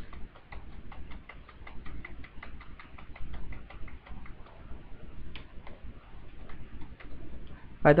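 Computer keyboard keys tapped in a steady run of clicks, a few a second, as a 1 and Enter are typed into cell after cell.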